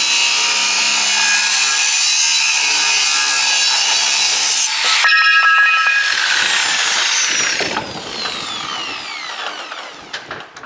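Large angle grinder cutting through three-inch steel box section, a harsh steady grinding for about five seconds. The cut then finishes, the grinder runs free with a high whine for a moment, and after it is switched off its pitch slides steadily down as the disc winds down.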